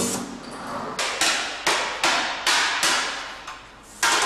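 Hand hammering of a sheet-metal car body panel over a shaping stake: about six sharp metallic blows, roughly two a second, each ringing briefly.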